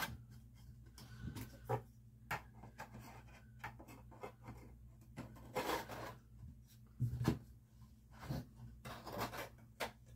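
Wooden pipe rack parts being handled: notched wooden slats slid into the slots of the frame, with scattered light knocks and scraping of wood on wood.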